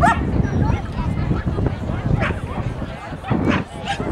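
Dogs barking in short, sharp barks: a yelp right at the start, then several barks in the second half.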